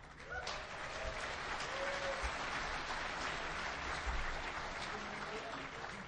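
Audience applause, a steady wash of clapping that dies away near the end.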